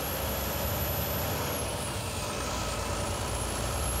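Volvo truck with a D13 diesel engine driving along the road, its engine and tyre noise running at a steady level.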